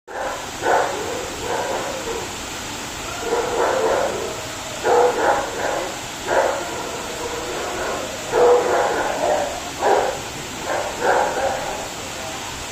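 A dog barking repeatedly, a dozen or so short barks in irregular runs, over the steady rush of a waterfall.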